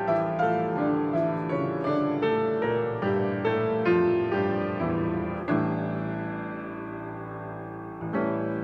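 Solo grand piano played: a flowing run of melody notes over chords, then a chord struck about five and a half seconds in and left to ring and fade.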